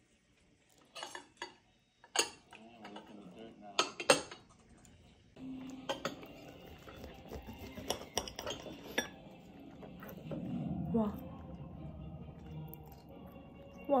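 Steel knife and fork clinking and scraping on a ceramic plate while cutting steak, with several sharp, separate clinks spread through.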